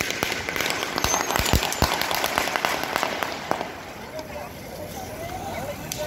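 Firecrackers going off in a rapid crackling series of bangs, a few louder than the rest, dying down after about three and a half seconds. Voices chatter in the background after that.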